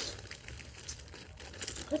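A plastic candy bag crinkling as it is handled, in light, scattered crackles.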